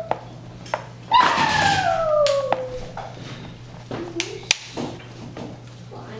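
A single drawn-out cry falling steadily in pitch, starting about a second in and lasting over a second, with a few light taps and clicks around it.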